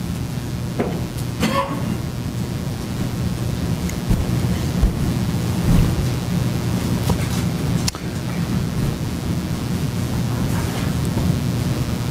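Courtroom microphone feed carrying a steady low rumble and hum with static, plus a few faint clicks. It is the fault noise of the courtroom mics.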